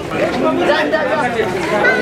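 Crowd chatter: many voices talking over one another at once, with no single clear speaker.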